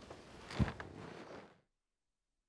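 Rustling of clothing and shuffling as seated performers settle with their instruments, with one soft thump about half a second in. The sound cuts off to silence a little past halfway.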